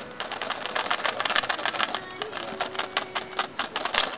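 A hard plastic cat toy rattling and clicking as it is shaken and batted by a cat's paws: a rapid, irregular run of clicks, busiest in the middle.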